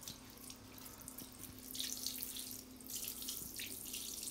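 Water spraying from a handheld shower head onto a cat's wet fur and the tiled shower floor: an uneven hiss that grows louder about a second and a half in.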